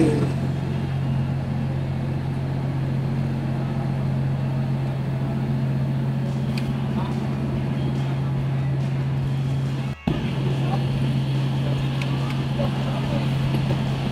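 Railway station ambience: a steady low hum under a general background din, with a brief dropout about ten seconds in.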